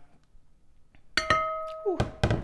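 A metal ladle strikes the glass trifle dish once, about a second in, and the glass rings on with a clear clinking tone that fades over most of a second.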